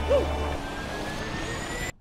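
Synthesized sound effect for an animated logo: a short swooping tone, then a steady rush with a thin whistle that climbs slowly in pitch and cuts off suddenly near the end.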